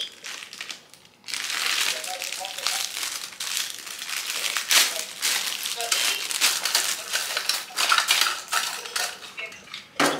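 Plastic packaging of disposable lash wands crinkling and rustling as it is handled, starting about a second in and going on in quick, irregular crackles.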